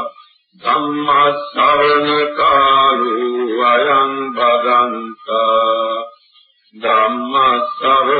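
A Buddhist monk's solo voice chanting verses in long, drawn-out melodic phrases, with two short breaks for breath.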